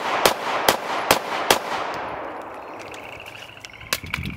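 Handgun fired four times in quick succession, about 0.4 s apart: the last four shots of a five-round timed string. Each shot echoes, and the echo fades over a second or so after the last shot.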